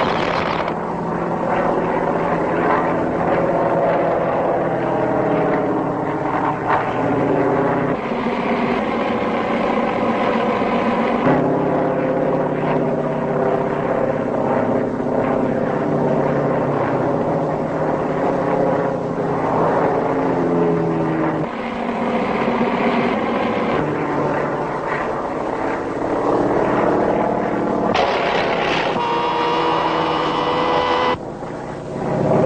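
Propeller aircraft engines droning steadily, their pitch rising and falling as the planes dive and climb, with abrupt shifts in the engine note every several seconds. A higher whine joins near the end. The sound is dull and band-limited, as on an old optical film soundtrack.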